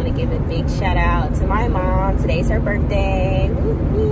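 Steady low road and engine noise inside a moving car's cabin, with a woman's voice over it about a second in and again near the end.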